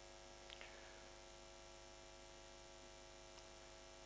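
Faint, steady electrical mains hum: a low buzz with many evenly spaced overtones in the sound system, otherwise near silence.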